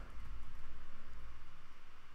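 Room tone: a faint, steady hiss with a low hum underneath.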